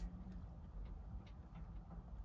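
Faint, scattered small ticks from a short tissue blade being pressed and positioned against a baked polymer clay bead, with a sharper click right at the start.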